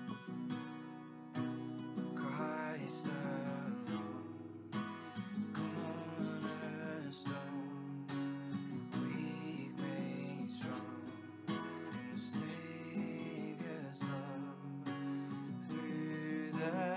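Acoustic guitar strummed in a steady rhythm of chords, an instrumental passage between sung lines of a worship song.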